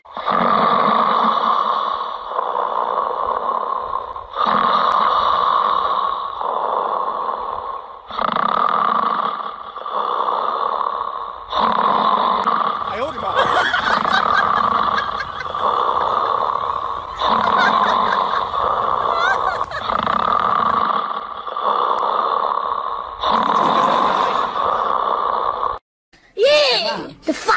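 A sleeping man's snoring picked up by a desk microphone and played through a loudspeaker, one noisy breath about every two seconds.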